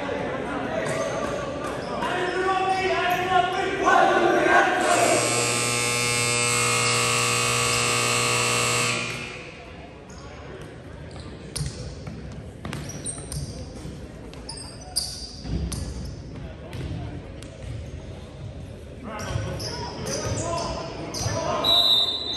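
Gym scoreboard buzzer sounding one steady, loud tone for about four seconds, starting some five seconds in: the signal that sends the teams back on court. Before it, players' voices. After it, scattered thuds of a volleyball being bounced and hit on the hardwood floor, echoing in the large gym.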